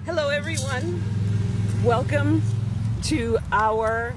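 A person speaking in short phrases over a steady low hum, which drops away about three seconds in.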